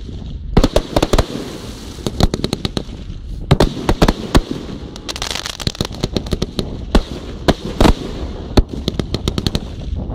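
Aerial fireworks bursting overhead: sharp bangs at irregular intervals mixed with crackling, and a quick run of pops near the end.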